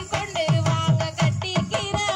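Tamil Valli Kummi folk music: a sung melody over a repeating pattern of low drum strokes.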